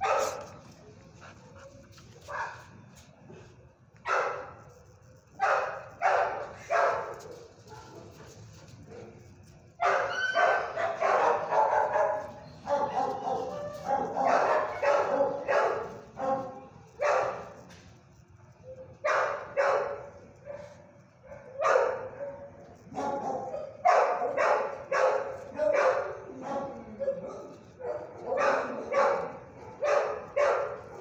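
Dogs barking repeatedly: scattered single barks at first, then rapid runs of barks from about ten seconds in, with a short lull just before the halfway point.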